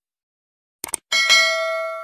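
Subscribe-button animation sound effect: a quick double mouse click just under a second in, then a bright bell ding that rings on and fades away.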